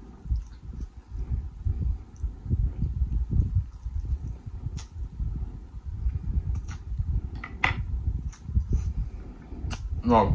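Close-miked chewing and wet mouth sounds of someone eating saucy noodles and seafood, with noodles slurped from a fork and scattered sharp wet clicks, the strongest a little past the middle.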